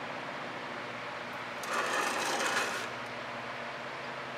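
A canvas being turned and slid across a paint-crusted work surface: a scraping rustle lasting about a second in the middle, over a steady low hum.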